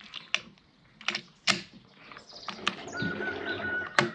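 Sharp mechanical clicks and clacks from handling an AGN Uragan PCP air rifle: its rotary magazine and side cocking lever being worked. Near the end a longer steady sound with a thin whistling tone, closed by a sharp click.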